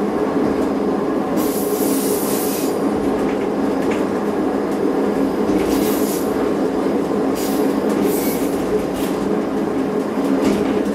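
Diesel train running steadily, heard from the driver's cab, with its engine giving a constant drone. The wheels squeal in short high-pitched bursts as it rounds curves: about a second and a half in, again near the middle, and for about a second near the end.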